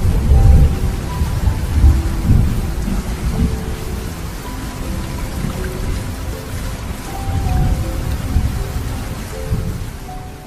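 Thunderstorm: steady heavy rain with deep rolling thunder, loudest in the first two and a half seconds and swelling again near the end.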